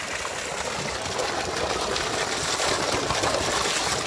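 Water poured in a heavy stream from a vessel, gushing steadily and splashing onto the ground.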